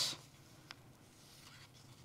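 Near silence with a faint rustle of a sheet of paper being picked up from the lectern, and a single small click about a third of the way in.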